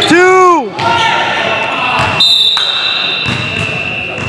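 Indoor basketball game in a gym: a man's loud shout that rises and falls in pitch right at the start, then, about two seconds in, a long steady high-pitched tone that lasts nearly two seconds and signals a stop in play.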